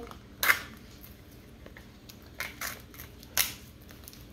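Hard plastic clicking and crackling as a Mini Brands plastic capsule is worked open by hand: one sharp click about half a second in, then a few shorter ones in the second half.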